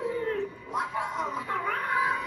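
Shorty animatronic's speaker playing a cartoonish clown voice that slides up and down in pitch, with music coming in near the end.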